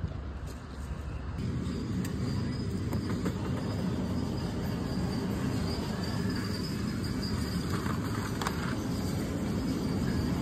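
Steady background noise of a large store: a low rumble and hiss with a faint high steady whine, no distinct events.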